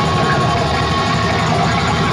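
Live rock band with distorted electric guitars and drums playing loud, a steady dense wall of sound with no clear beat.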